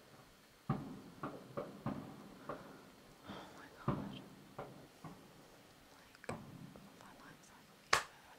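Faint fireworks going off: about ten sharp bangs at uneven intervals, each trailing off briefly, the loudest near the end.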